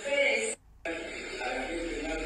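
Speech: a voice talking, with a short pause about half a second in.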